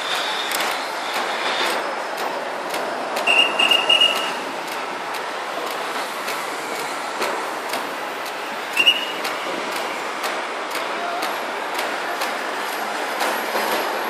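Steady road traffic passing below, with short, shrill blasts on a traffic officer's whistle: three quick blasts about three and a half seconds in and one more near nine seconds. A thin high squeal sounds in the first two seconds.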